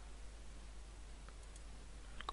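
A couple of faint computer mouse clicks over a steady background hiss, as edges are picked on screen.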